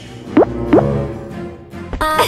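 Two quick rising cartoon 'bloop' sound effects, a potion plopping drop by drop into a glass of wine, over soft background music.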